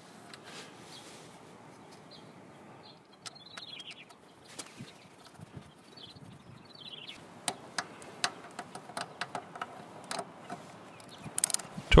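Faint bird chirps twice in the first half, then a run of small sharp metallic clicks in the second half as the final drive's oil drain bolt is run back in with a 12 mm socket.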